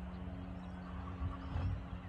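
Outdoor ambience with low rumble and a steady, low mechanical hum like a distant engine.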